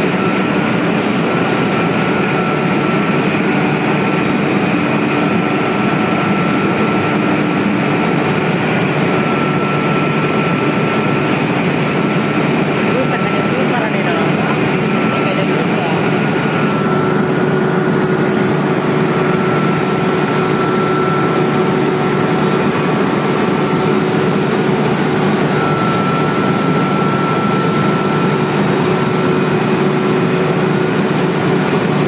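Large electric water pump sets running in a pump house: a loud, steady drone with a few steady whining tones over it. About 17 seconds in, a high whine stops and a lower hum comes in.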